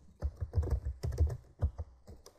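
Typing on a computer keyboard: a quick, irregular run of keystrokes, several a second.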